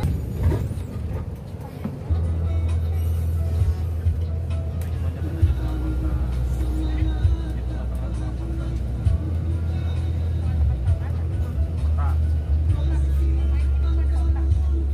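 Tour bus engine and road noise heard from inside the bus while it drives, a low steady drone that gets louder about two seconds in. Music with voices plays over it.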